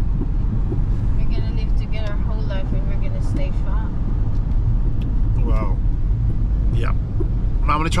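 Steady low rumble of a car's engine and tyres heard inside the cabin while driving, with a few faint snatches of voice.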